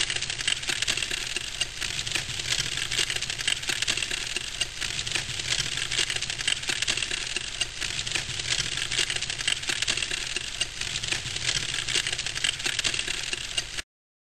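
Crackling fire, a dense and steady patter of small crackles and pops that starts and stops abruptly.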